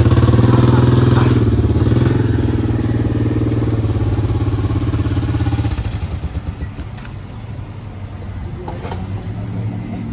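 A motor vehicle's engine idling close by, a steady low hum that fades out about six seconds in, leaving a quieter low rumble.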